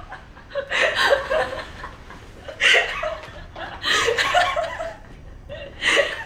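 Two women laughing in several bursts.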